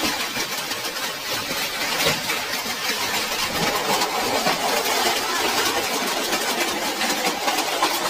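Heavy hail and rain drumming on corrugated metal roofs: a dense, steady clatter of countless small impacts.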